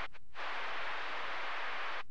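Two-way radio static: two short clicks, then a steady burst of hiss that opens about a third of a second in and cuts off at about two seconds.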